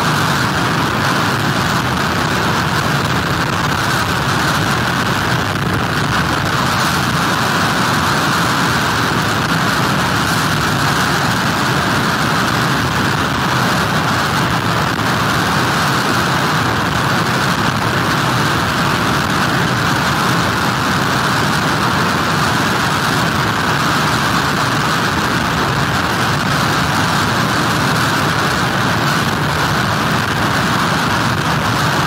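Hurricane wind and heavy surf: a loud, steady, dense noise that holds an even level throughout with no let-up.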